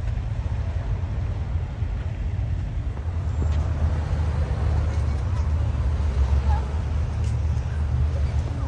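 A car engine idling with a steady low rumble, with faint voices of people in the background.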